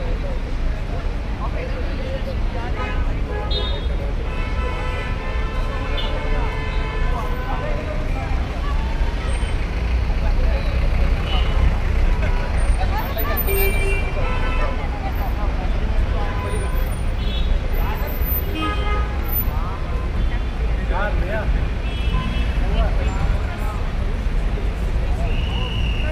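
City street ambience: a steady low traffic rumble with car horns honking now and then, and voices of passers-by chattering.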